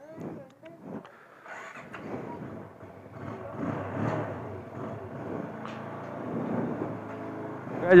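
Motorcycle engine running as the bike is ridden at low speed, a steady hum that grows a little louder and clearer in the second half.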